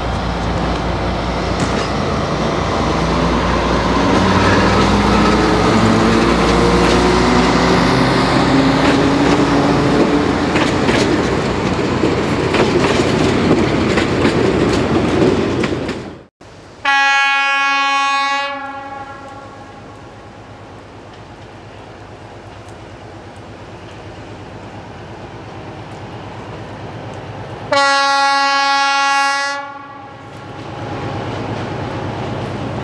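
Narrow-gauge diesel locomotive (ČSD class 705.9) pulling away with its coaches, its engine note rising as it accelerates, with rail clatter. After a sudden cut, the locomotive's horn sounds two blasts of about a second and a half each, roughly eleven seconds apart.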